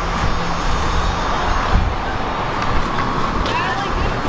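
Outdoor traffic noise with a low rumble of wind and handling on a moving hand-held camera's microphone, and a steady low hum for about the first second.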